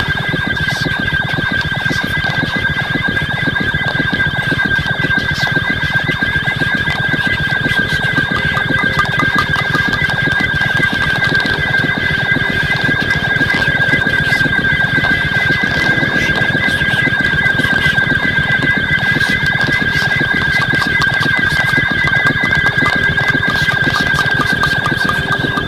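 Improvised experimental electronic music: a loud steady high tone with a warbling tone just above it, over a dense, fast-pulsing noisy texture.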